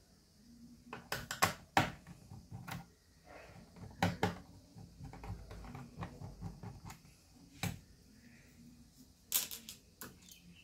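Small, irregular clicks and light knocks of a screwdriver working the screws out of a laptop's plastic bottom case. There is a quick run of clicks about a second in, more around the middle, and single sharper knocks near the end.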